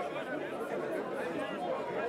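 Background chatter: several faint voices of a crowd of bystanders talking over one another.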